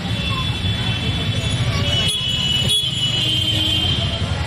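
Outdoor street noise: a steady low rumble of road traffic, with a high horn-like tone coming in from about halfway.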